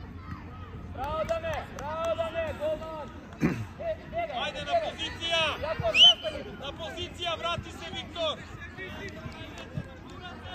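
Overlapping shouts and calls, mostly high-pitched children's voices, from players and touchline spectators at a youth football match. The loudest shout comes about six seconds in and rises sharply in pitch.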